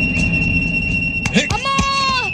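A high, steady ringing tone cuts in suddenly over a low rumble: a film sound effect of ringing ears after a blow. A sharp knock comes about a second and a half in, and a held wailing voice rises near the end.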